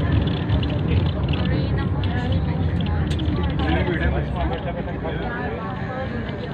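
Steady low rumble of a moving bus heard from inside the cabin, with people talking indistinctly over it.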